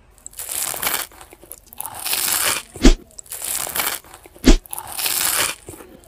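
Crunchy cutting and scraping sound effect for a knife slicing through a crusty growth, in about four grinding passes. Two sharp cracks, about three seconds in and a second and a half later, are louder than the rest.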